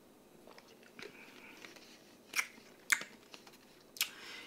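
A person drinking from a plastic bottle: faint mouth and swallowing sounds, with two sharp gulps about two and a half and three seconds in.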